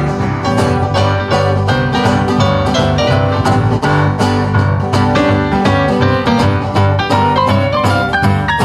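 Live band playing a rock-and-roll number, with an electric stage piano taking a solo of quick, dense notes over a bass guitar line and a cajon keeping the beat.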